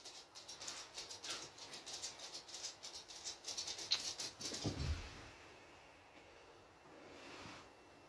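Faint, rapid rustling and crackling as hands move through hair close to the phone's microphone, with a soft thump about five seconds in, then near silence.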